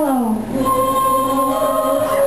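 Live pop song with a woman's voice and a Yamaha stage keyboard: the voice slides down in pitch at the start, then held notes sustain over the keyboard.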